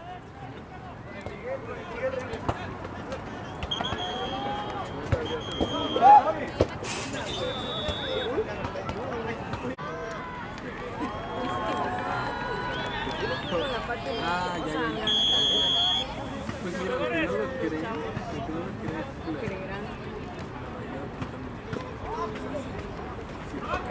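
Players and coaches talking and calling out on the sideline, with four short, steady referee whistle blasts; the last, about fifteen seconds in, is the loudest and lasts about a second.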